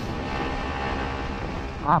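Motorcycle engine running at a steady cruise of about 95 km/h, an even engine hum under a rush of wind and road noise.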